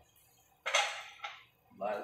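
Two sharp clacks of kitchenware being handled at a wire dish rack beside the sink, about half a second apart; the first is the louder.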